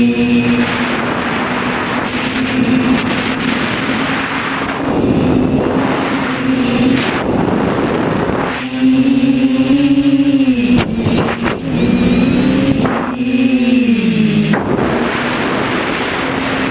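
Quadcopter's brushless motors and propellers heard from the onboard camera in flight: a buzzing whine that rises and falls in pitch with throttle, over rushing wind and prop-wash noise. The whine is strongest in the second half and slides down in pitch a couple of times near the end.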